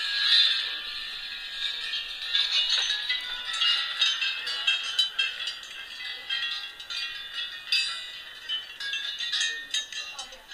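Orchestral tubular bells (chimes) struck over and over: a dense run of overlapping, ringing metallic tones with many quick strikes. The sound is thin, heard through a television speaker.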